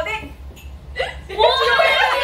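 Several women's voices exclaiming and laughing excitedly, a short high-pitched cry at the start, then overlapping voices loudly from about a second in.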